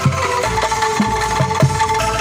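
Angklung ensemble playing a song: shaken bamboo angklung holding melody notes over a steady low struck beat, about two beats a second.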